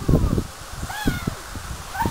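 Dry fallen leaves rustling and crunching in uneven strokes, loudest right at the start, under a sled and people on a leaf-covered lawn. About a second in comes one short high call that rises and falls.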